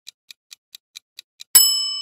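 Countdown-timer sound effect: clock ticking, about four to five ticks a second. About one and a half seconds in, the ticking gives way to a loud, bright bell chime that rings on and marks the time running out.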